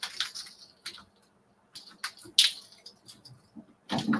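Takadai braiding bobbins (tama) clacking together as threads are moved one by one across the stand: a handful of separate sharp clicks at irregular intervals, the loudest about midway.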